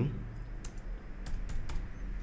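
Computer keyboard keys being typed: four separate keystrokes spread over about a second, typing a short word.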